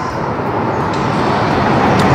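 Road noise of a vehicle passing on the street, a steady rush that grows slowly louder.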